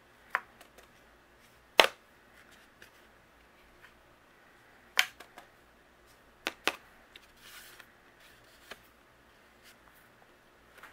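Scattered sharp taps and clicks of a cardstock panel being knocked against a plastic powder tray to shake off excess white embossing powder, about half a dozen in all, the loudest about two seconds in, with a brief soft rustle near the end.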